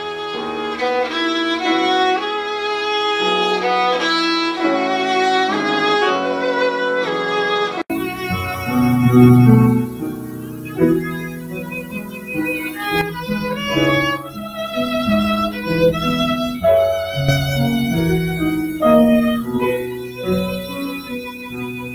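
Violin and grand piano playing a light tune together. About eight seconds in the sound cuts abruptly to another take, with a fuller low end.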